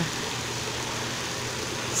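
Hot tub jets running: a steady bubbling rush of water with a low pump hum underneath.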